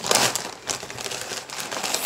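Kraft-paper mailer crinkling and rustling as it is handled and pulled open, in a run of short crackles that are louder at first and lighter afterwards.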